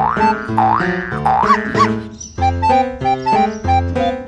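Bouncy keyboard background music for children, with a regular beat of short notes. In the first two seconds a swooping, boing-like sound effect slides up and down in pitch about four times over the music.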